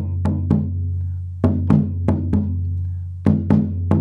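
Alfaia, a rope-tensioned Maracatu bass drum, struck with wooden sticks in a repeating rhythm: short groups of three or four hits about every two seconds, the deep boom ringing on between them.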